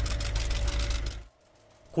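Rapid clicking of press camera shutters over a low rumble of outdoor field noise, cutting off suddenly about a second in, followed by near silence.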